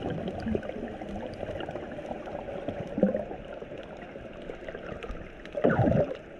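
Underwater sound heard through the camera: a steady muffled rush of water with scattered faint clicks, a short gurgle about three seconds in and a louder gurgling burst about a second before the end.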